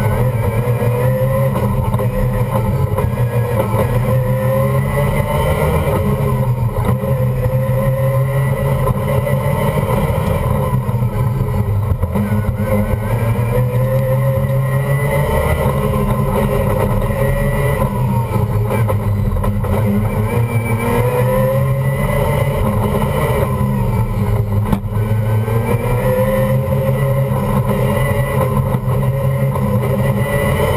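Mazda RX3's rotary engine, loud inside the stripped race cabin, its revs rising and falling over and over as the car is driven hard through an autocross course.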